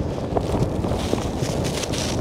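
Strong wind buffeting the microphone in a steady, fluttering rumble, with a few faint knocks or scuffs.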